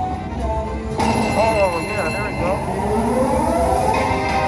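Video slot machine (Mighty Cash Vegas Wins) playing its electronic spin music while the reels turn, with swooping up-and-down tones in the middle, over background voices.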